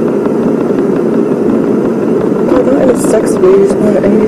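Low-fidelity recording of a conversation between a man and a woman, muffled under a loud, steady rumbling background noise. The woman's voice comes through more clearly from about two and a half seconds in.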